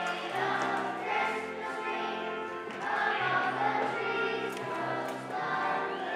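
Children's choir singing together over an instrumental accompaniment with a low bass line that changes note every second or so.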